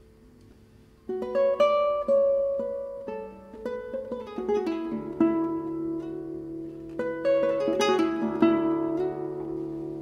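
Solo classical guitar: the last notes ring and fade quietly, then about a second in a loud plucked chord begins a passage of picked notes over a sustained low bass note.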